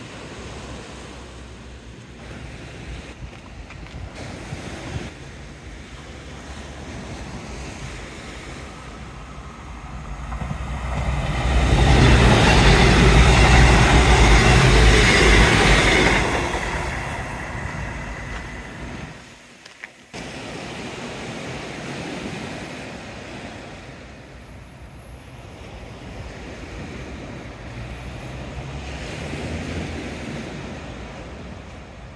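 A CrossCountry diesel passenger train passing close by on the seawall line: its sound builds over a couple of seconds about ten seconds in, stays loud for about five seconds and fades away. Before and after it, waves breaking on the beach and wind on the microphone.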